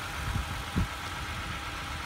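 Toyota Sienna minivan engine idling steadily with its hood open, running with the battery removed and a solar panel wired in its place. A couple of short low thumps come in the first second.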